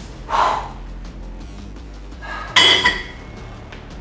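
Background music, and about two and a half seconds in a single loud metallic clank with a short ringing: the cable machine's weight-stack plates knocking together as the set ends and the stack comes down.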